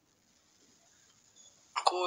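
Near silence, then a person's voice starts speaking abruptly near the end.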